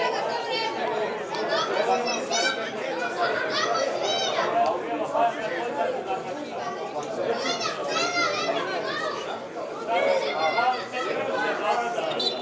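Several voices shouting and calling out at once across a football pitch, overlapping and indistinct.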